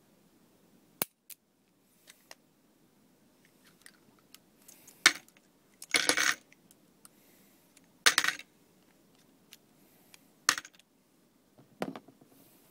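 Gunshots in an indoor shooting range: a series of sharp bangs, about five loud ones one to three seconds apart, some with a short echoing tail, with fainter clicks between.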